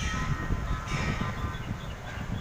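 Low, uneven rumble of city street traffic, with wind buffeting the microphone.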